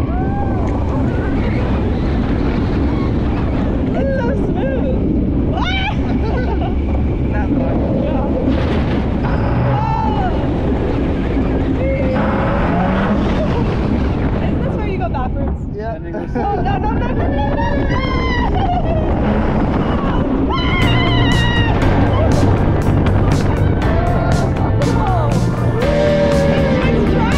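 Rush of wind over a wrist-mounted camera's microphone on a moving roller coaster, with the riders screaming, whooping and laughing throughout. The rush drops briefly about two-thirds of the way through, then picks up again.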